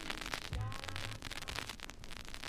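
Surface crackle and hiss of a 7-inch 45 rpm vinyl record as the reggae song fades out, with a faint bass note about half a second in.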